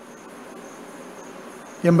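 A pause in a man's talk filled with steady background hiss and faint, continuous high-pitched tones. His voice comes back near the end.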